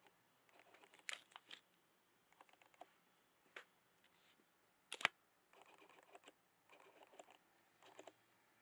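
Faint, scattered soft clicks and rustles of a cat's paws walking over tulle fabric and a wooden floor, in clusters, with one sharper click about five seconds in.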